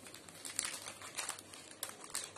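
Thin plastic packaging of rub-on transfer sheets crinkling as it is handled, a soft string of irregular crackles.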